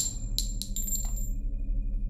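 Logo sound effect: a quick run of metallic clinks with a bright ringing tail, about five strikes in the first second or so, over a steady low drone.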